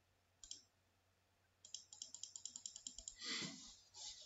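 Faint computer mouse clicks: a single click, then a rapid run of about ten small clicks a second as a move is made on an on-screen chessboard, followed by a short soft noise.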